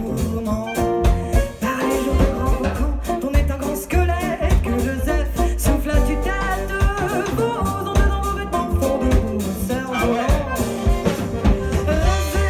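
Live band playing an upbeat swing-style tune: a woman singing over acoustic guitar, double bass, accordion and drum kit, with a steady beat.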